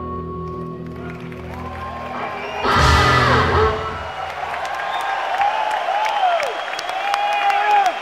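Electric guitar and band notes ringing out and fading at the end of a song, a loud final hit from the band about three seconds in, then an audience cheering, whistling and applauding.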